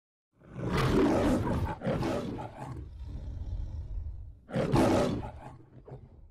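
The MGM studio logo's lion roar: two roars in quick succession starting about half a second in, a quieter stretch, then a third roar near the end that fades away.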